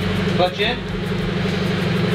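Subaru BRZ's flat-four boxer engine idling steadily.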